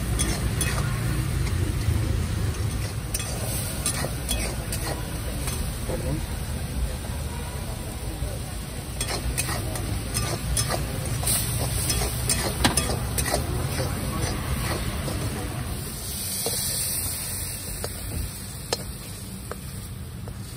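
A spatula stirring and tossing noodles in a hot pan, with sizzling and frequent sharp clicks of metal on the pan over a low steady rumble.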